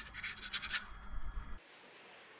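Faint handling rustle from hands holding a crochet hook and thin yarn. It cuts off abruptly about one and a half seconds in, leaving near-silent room tone.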